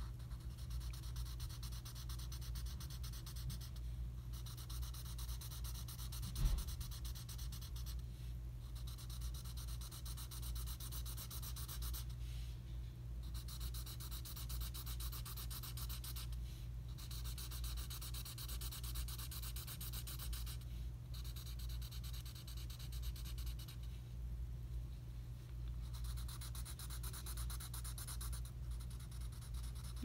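Black marker shading on paper: rapid back-and-forth scratchy strokes in runs of a few seconds, broken by short pauses. A single thump about six seconds in is the loudest moment, and a steady low hum runs underneath.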